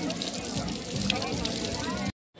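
Outdoor shower running, water spattering, with faint voices and background music.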